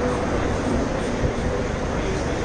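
Many devotees chanting japa at once, each at their own pace: a steady, dense murmur of overlapping voices with no single voice standing out.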